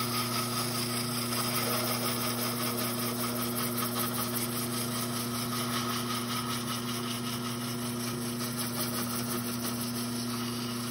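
A wood lathe running with a steady motor hum while an abrasive strip is held against the spinning segmented pen blank, a continuous rushing rub of sanding.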